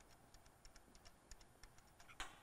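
Near silence with faint, irregular light clicks as a threaded power-cord connector is screwed onto a welding carriage by hand.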